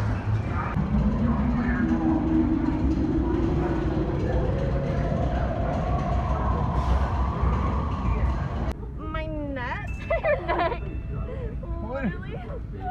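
Attraction sound effects: a steady low rumble under an electronic tone that rises slowly for about eight seconds. It cuts off suddenly about nine seconds in and is followed by voices.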